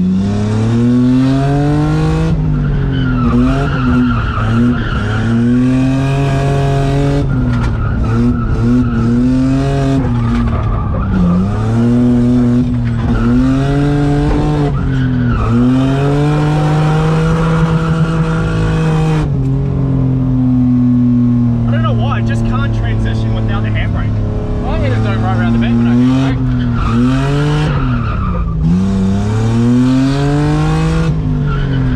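Nissan Skyline R33's engine heard from inside the cabin, revving up and dropping again over and over through a drift run. Tyres squeal about two-thirds of the way through.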